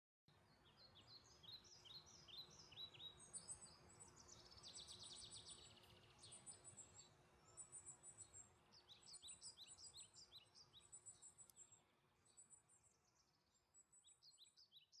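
Faint birdsong: runs of quick repeated chirps with higher thin trills, over a soft background hiss, thinning out near the end.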